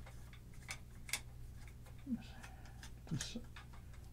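Scattered small clicks and taps from a K&M 238 metal mic holder clamp being handled and fitted onto a mic stand pole, over a faint steady low hum.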